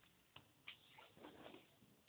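Near silence with a few faint ticks and a soft rustle.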